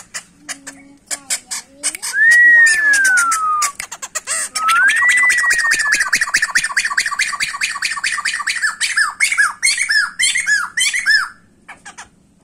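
Caged laughingthrush (poksay) singing loudly. Quick ticking notes lead into a whistle that rises and then slides down. A second rising whistle is held under rapid chattering, and the song ends in a run of about six short down-slurred whistles.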